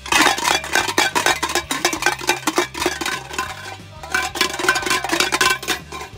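Loud, rapid banging and clattering, dense sharp hits with some ringing, that starts and stops abruptly: a racket made to wake sleepers. Steady background music runs underneath.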